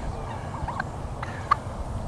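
Faint turkey clucking: a few short, quiet hooked calls, one sharper near the end, over low rustling from fingers working a plush toy.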